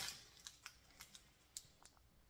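Near silence with a few faint, scattered light clicks as a plastic graded-card slab and its cardboard box are handled.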